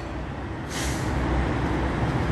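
Road traffic noise with a low rumble, and a short hiss of about half a second near the middle.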